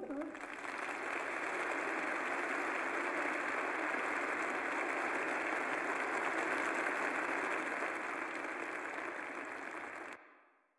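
Dense, steady babble of many overlapping voices, thin and squeezed into the middle of the range with no clear single voice.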